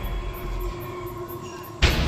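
Suspense background music: a sustained low drone with held tones, then a sudden loud hit near the end.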